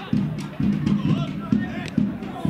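Regular low, drum-like thumps about twice a second, with a voice faintly over them.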